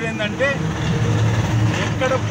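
A man speaking in Telugu over a low, steady engine rumble from a motor vehicle, which grows louder about halfway through.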